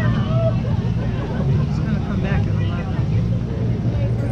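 A portable generator running steadily, a loud low drone, with people talking in the background.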